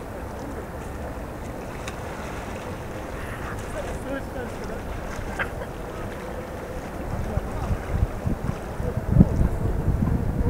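Wind rumbling on the microphone, growing into heavier, gusty buffeting in the last few seconds, with faint voices in the distance.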